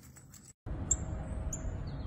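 Two short, high bird chirps about half a second apart over a steady low rumble of outdoor background noise. The noise starts abruptly a little over half a second in.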